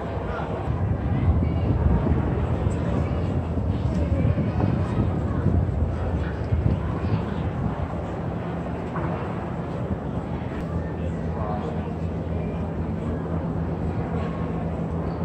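Indistinct chatter of many people over a steady low rumble, the rumble heavier in the first half; a faint steady hum joins about ten seconds in.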